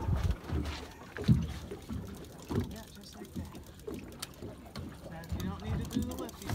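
Low rumble of an offshore fishing boat at sea, with wind buffeting the microphone in a few low thumps and faint indistinct voices.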